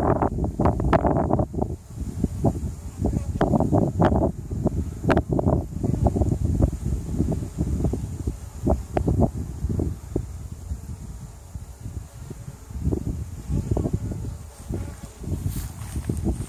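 Wind buffeting the microphone outdoors: a gusty, uneven rumble with rustling that rises and falls throughout.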